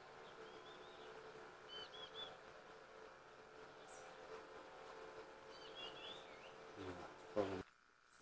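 Faint songbird calls from the forest canopy: a short phrase of three or four quick, high chirps, heard about three times, over a steady faint hum.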